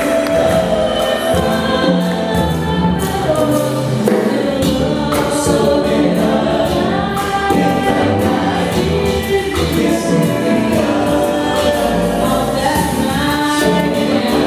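Five-voice vocal jazz ensemble singing in harmony into microphones, accompanied by piano, upright bass and drums.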